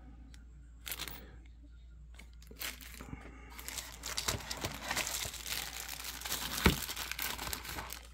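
Clear plastic packaging crinkling and rustling as hands work it out of a box tray. It starts with a few light clicks and turns into a busy run of crinkling in the second half, with one sharp tap standing out near the end.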